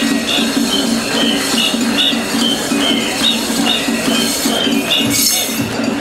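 Japanese festival music with a high piping melody over a steady beat, with the metal rings on the tekomai escort's iron staffs jingling as they walk.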